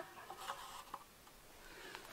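Faint small ticks and scrapes from hands handling a clay target thrower, twice within the first second.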